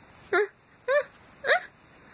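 Three short, high vocal cries about half a second apart, each bending in pitch, like whimpering.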